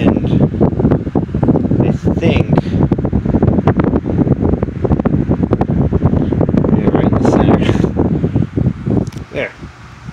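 1960s GE oscillating desk fan running, its air buffeting the microphone with a rough rumble and flutter; the sound drops away near the end.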